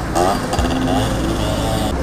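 City road traffic: a steady low engine rumble from passing vehicles, with indistinct voices of people close by.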